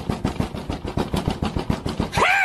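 A rapid rattle of sharp clacks, about ten a second, keeping an even pace.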